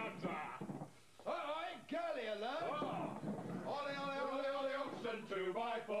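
Men's voices calling out in a rowdy group, with one long held note about four seconds in.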